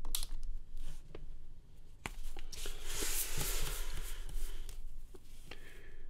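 Paper being handled: a few sharp clicks, then a long rustle and slide of the drawing sheet being moved, lasting about two and a half seconds.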